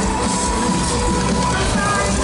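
A live band playing loud amplified music on stage, with a long held note running over the steady beat.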